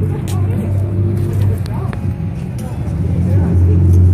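Street traffic: passing cars giving a steady low engine and road hum, with people talking nearby.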